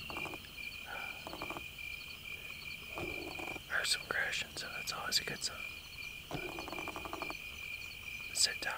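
Outdoor evening chorus of frogs and insects: a steady high-pitched drone throughout, broken by short pulsed croaking trills near the start and a longer one of about a second near the end. A few short sharp clicks come in the middle.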